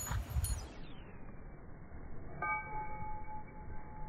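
A single bell-like ringing tone about halfway through, holding with a few overtones for about a second as it fades, over faint outdoor background noise.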